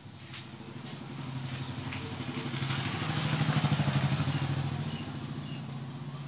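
A small engine running at a steady pitch, growing louder to a peak about halfway through and then fading somewhat.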